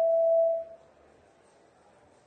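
A single steady pure tone that runs straight on from the end of speech and fades out under a second in, leaving faint room hiss.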